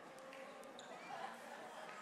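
Murmur of many people talking at once as a congregation greets one another, with a few footsteps knocking on a hollow wooden stage in the first second.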